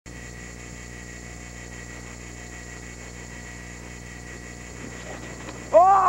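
Steady hiss and hum of a camcorder's recording, with faint thin tones in it. Near the end a person's loud shout breaks in, its pitch arching up and then falling.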